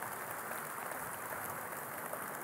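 Audience applauding: steady clapping from many hands.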